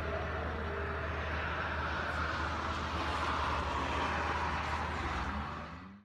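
A Honda N-ONE race car going by on the circuit, heard from the grandstand. Its engine and tyre noise swells to a peak a few seconds in, then fades out near the end.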